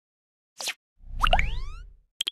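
Graphic-transition sound effects for an animated title card: a brief falling swish about half a second in, then a rising whoosh with a low rumble under it from about one second, fading out near the end.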